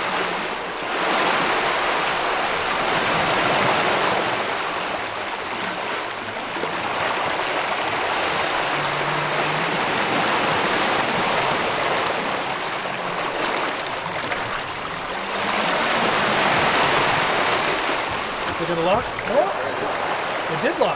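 Water rushing and churning in the wake behind a sailing catamaran's stern, a steady wash that swells and eases every few seconds.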